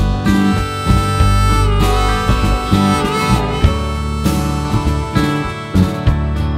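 Blues band playing an instrumental passage: a harmonica plays long, bent notes over guitar and a steady bass line.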